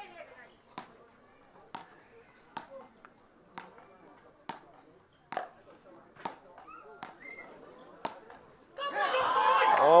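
A road tennis rally: wooden paddles knocking a felt-stripped tennis ball back and forth, a sharp knock about once a second, around nine in all. Near the end the crowd breaks into loud cheering and shouting as the point is won.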